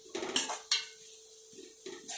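Stainless steel spoon scraping and clinking against a metal pan while stirring grated carrot, with several quick strokes in the first second and a couple more near the end.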